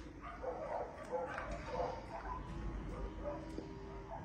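A dog eating a mix of dry and wet food from a ceramic bowl: irregular chewing and mouth noises with a few small clicks.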